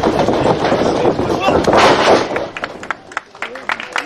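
Spectators shouting and cheering, loud and distorted on the microphone, for about the first two seconds. Then it falls away, leaving scattered knocks and thumps.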